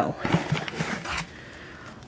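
Paper envelopes rustling and sliding against each other as they are handled in a cardboard box, with a few small clicks, dying down after about a second.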